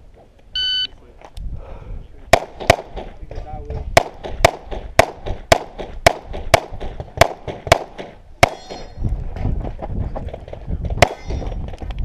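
Electronic shot timer's start beep, then a pistol firing a stage: about a dozen shots in quick pairs and runs over some nine seconds, with a pause before the last one.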